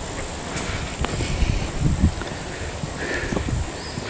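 Footsteps on a sandy dirt road and the irregular low knocks and rustle of a handheld camera rig being carried while walking, with a faint steady high insect drone.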